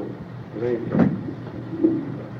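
A pause in a panel discussion on an old mono cassette recording: a faint word or two, a single knock about a second in, and a steady low hum from the tape.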